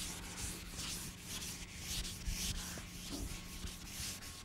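Chalk rubbing on a blackboard in a run of short strokes, about three a second, as a diagram is drawn. A faint steady low hum lies underneath.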